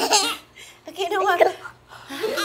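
Laughter from a woman and a toddler, heard twice with a short pause between.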